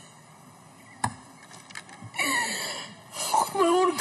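A woman's tearful, breathy sob with a falling voice about two seconds in, after a short hush broken by a single click; her voice starts again near the end.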